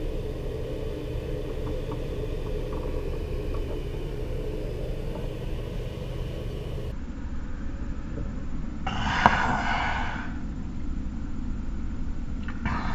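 A man gulping a drink from a glass bottle over a steady low hum. After a cut about seven seconds in, there is a short breathy exhale just after nine seconds.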